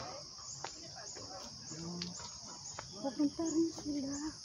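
Steady high-pitched insect chorus in forest, with a short chirp repeating about twice a second. A person's voice is heard briefly about two seconds in and again near the end.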